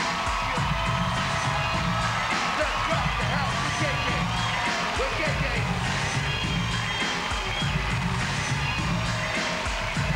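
Loud hip-hop beat playing through a theatre PA, a heavy bass pattern repeating steadily, with the concert crowd cheering and shouting over it.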